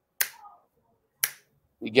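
Two sharp finger snaps about a second apart.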